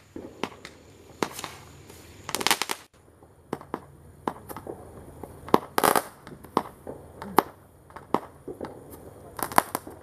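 Fireworks going off: sharp bangs and crackling pops at uneven intervals, in short clusters, the loudest burst about six seconds in.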